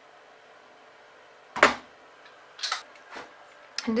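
Instant Pot lid being lifted off and set down: one sharp knock about a second and a half in, then a few lighter clicks.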